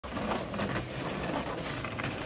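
Small hard wheels of a hand truck rolling over the pavement, a steady rumbling clatter.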